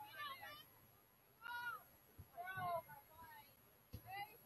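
Faint, distant high-pitched shouts from female voices on a soccer pitch: three or four short calls, with a dull thump about two seconds in and another near the end.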